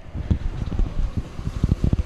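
Wind buffeting a handheld microphone: irregular low rumbling with short gusty thumps.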